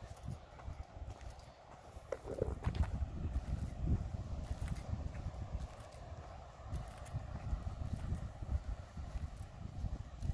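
Footsteps on a sandy path with low wind rumble on the microphone, the thuds getting louder about two seconds in.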